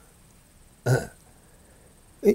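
A man's single brief vocal "eo", a short "uh" interjection, about a second in, with little else to hear.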